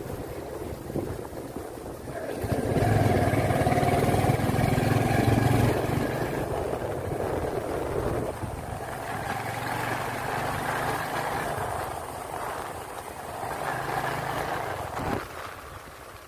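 Motorcycle engine running while riding. It grows louder and higher a few seconds in as the bike speeds up, then eases off and picks up again near the end, with a single knock just before the end.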